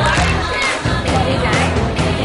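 A crowd of young people cheering and shouting together over loud music with a steady bass line.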